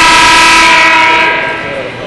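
Basketball arena scoreboard horn sounding once, a loud steady blare of several held tones that fades out near the end.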